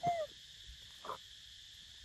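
A macaque gives one short, arched coo call right at the start, and a fainter short sound follows about a second in. A steady high insect buzz runs underneath.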